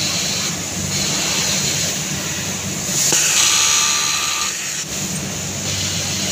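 Industrial sewing machine stitching knit fabric, its motor humming in runs with brief stops between them. About three seconds in, a louder hiss lasts for a second or so.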